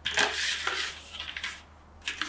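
Hard plastic parts of a Gamma Seal bucket lid scraping and clicking as the spin-on lid is screwed into its ring, loudest in the first half second and dying away after about a second and a half.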